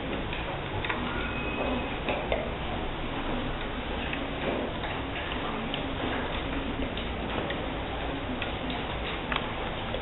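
Scattered, irregular light clicks and ticks from many children working at their desks, over a steady background noise of the room.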